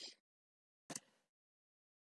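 Near silence, with one brief, faint click about a second in.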